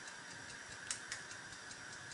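Faint, steady clockwork ticking, with two small sharp clicks about a second in as the eggshell halves knock together while the egg is separated.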